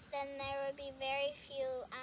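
A young girl's voice talking in long, drawn-out, fairly level-pitched phrases.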